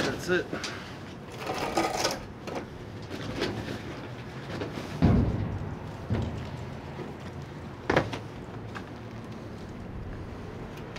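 Thumps and knocks of a man climbing out of a dumpster. The loudest thump comes about five seconds in, and a sharper knock comes near the end.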